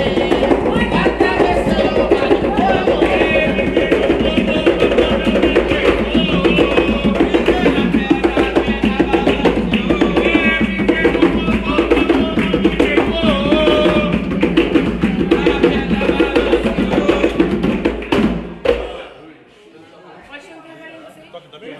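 Atabaque hand drums beating a fast rhythm with hand clapping and group singing of a ritual chant (ponto). The drumming and singing stop suddenly about a second and a half before the end.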